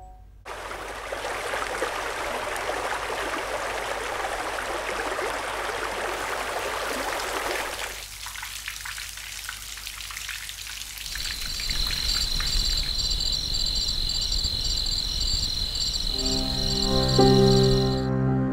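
Sleep-app rain ambience: a steady hiss of rainfall, which thins out about 8 seconds in. From about 11 seconds a rhythmic high-pitched pattern repeats over it, and near the end soft piano notes come in.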